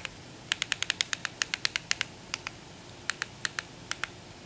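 Remote-control buttons clicking in quick succession, about eight presses a second for two seconds, then a few more near the end: a cursor being stepped key by key across an on-screen keyboard.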